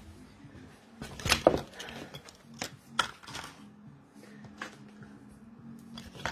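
Clicks and knocks of a clear plastic jewellery box and the rings in it being handled and rummaged through, loudest about a second and a half in, with a few more sharp clicks after.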